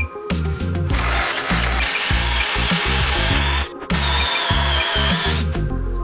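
Power-tool cutter bit boring a counterbore into the end grain of a round wooden table leg. It cuts in two stretches of about two and a half and one and a half seconds, with a short break between, over background music.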